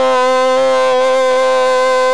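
Goal horn sounded to celebrate a goal: one long, steady, very loud horn note held through.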